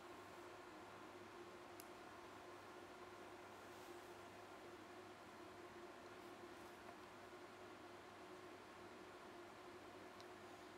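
Near silence: steady faint room hum, with a single faint click about two seconds in.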